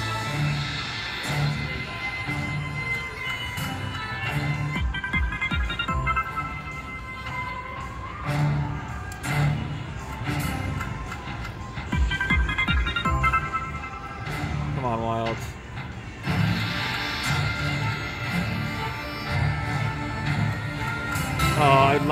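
WMS The King and the Sword video slot machine playing its free-spins bonus music over a steady low beat, with short chime runs as spins land and wins add up.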